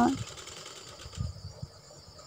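A woman's voice stops right at the start. After it come faint, irregular low knocks and cloth rustling as fabric is worked under a domestic sewing machine's presser foot, over a faint steady high hiss.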